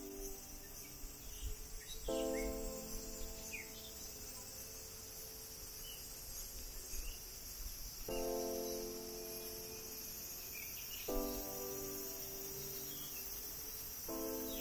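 A steady, high-pitched drone of insects, with soft background music over it: sustained chords that sound afresh about two, eight and eleven seconds in and fade slowly.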